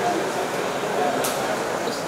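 Indistinct chatter of many voices in a crowd, with a brief click about a second in.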